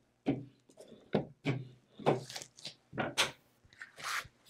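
Brayer roller pressed and rolled back and forth over leather on a Cricut cutting mat, about two rolling strokes a second, to stick the leather down before cutting.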